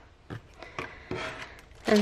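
Soft rustling and a few light knocks as a hand sets down the towel and picks up plastic-bagged pens from the stationery box.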